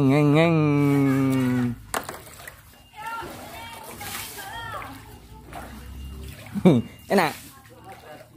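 A man's voice drawing out a wavering 'ngeeeng', imitating a motorboat engine for about two seconds at the start. Quieter voices and faint sloshing of flood water follow, then two short sliding cries near the end.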